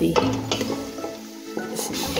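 Mutton sizzling as it fries in a pot, being stirred, with a utensil scraping against the pot just after the start and again near the end.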